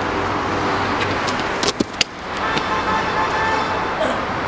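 Steady city traffic noise, with a few sharp knocks about two seconds in and a faint steady pitched hum coming in soon after.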